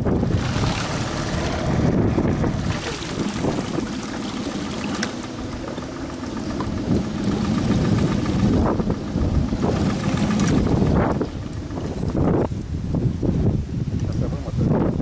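Suzuki outboard motor running steadily, pushing the inflatable boat along the river.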